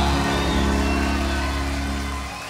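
A live band's final chord held and slowly fading away, with a steady low bass note under the guitars.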